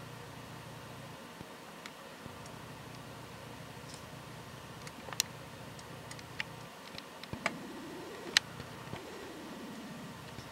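Faint steady outdoor hiss with a scattered handful of sharp ticks and clicks, the loudest about eight seconds in, and a faint low tone that rises and then falls near the end.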